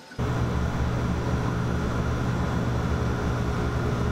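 Laser cutter running while it cuts a plywood sheet: a steady machine hum that cuts in suddenly just after the start.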